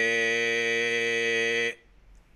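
A man's voice holding one steady sung note with ventricular-fold distortion. His false vocal folds vibrate at half the frequency of the true folds, adding an undertone an octave below the note. It is heard as two clear fundamentals, a periodic rough tone rather than noise. The note cuts off sharply near the end.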